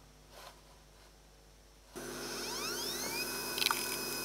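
Near silence, then about two seconds in a 2 GB Toshiba PC Card hard drive spins up: a whine that rises in pitch and settles into a steady high tone, followed by a few short clicks.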